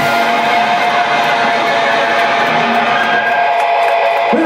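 A live band's electric guitar ringing on a held chord, steady and loud, as the song comes to its close.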